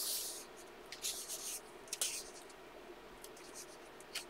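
Paper rustling and rubbing as a hand smooths down a freshly turned page of a thick coloring book: the end of the page-turn swish, then a few short, soft swishes about one and two seconds in and faint paper ticks after.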